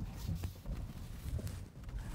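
All-terrain tyres of an electric SUV crawling over loose gravel and rocks: irregular crunches and small knocks over a low rumble.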